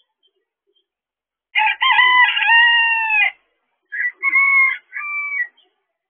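A rooster crowing loudly and close by: one long call, held and then falling away at its end, followed by three shorter calls.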